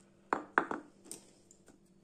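Two sharp, hard knocks in quick succession, then a lighter tap: a knife and pouches of ryazhanka frozen solid knocking against a hard countertop.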